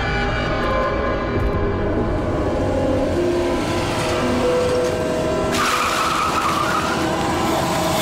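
Dramatic background music with steady held tones, joined a little past two thirds of the way in by an SUV's tyres skidding through dirt.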